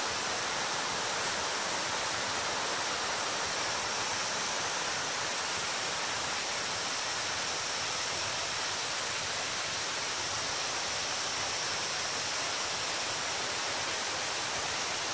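Steady rushing of a mountain stream cascading over boulders below a waterfall, an even, unbroken noise.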